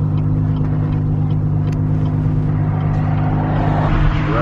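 Car engine running at a steady speed, a low, even drone heard from inside the cabin.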